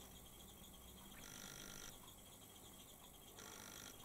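Near silence: faint room tone with a low hiss.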